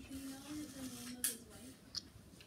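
Quiet, low talking in a small room, with a short sharp hiss a little over a second in.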